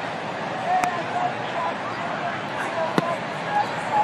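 Ballpark crowd murmuring, with scattered voices calling out. A sharp leather pop about three seconds in, the loudest sound, is a pitch smacking into the catcher's mitt; a smaller pop a little under a second in.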